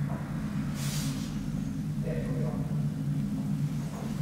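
1962 KONE elevator, modernized by WPM, running with a steady low hum. A brief hiss comes about a second in.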